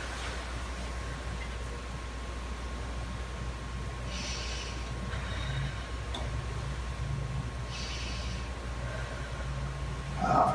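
A person taking slow deep breaths through the mouth for a stethoscope lung check: two soft breaths about four seconds apart, over a steady low hum.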